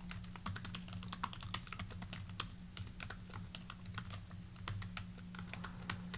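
Typing on a computer keyboard: a quick, irregular run of key clicks as a line of code is entered, over a faint steady low hum.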